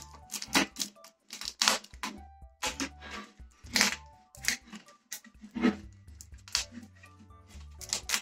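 Adhesive tubular-mounting tape being unrolled and pressed onto a road-bike rim: irregular, short crackly rips as the sticky tape peels off its roll, about a dozen over several seconds.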